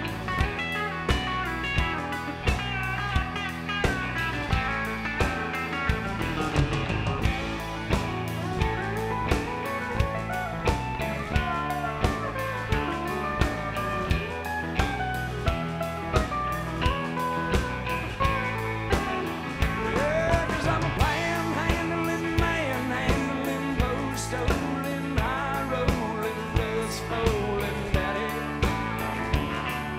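A live band plays an instrumental break with electric guitar lead over bass and drums, the drums keeping a steady beat of about two hits a second. The guitar lines bend in pitch, most clearly a little past the middle.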